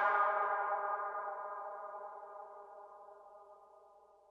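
The closing synthesizer chord of a drum and bass track ringing out and fading away, its higher tones dying first, until it is gone about three and a half seconds in.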